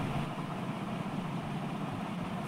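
Steady low background hum with even noise, no distinct clicks or knocks.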